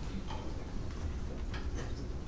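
Low hall rumble with a few faint, irregularly spaced clicks and taps from an orchestra settling before it plays; no music yet.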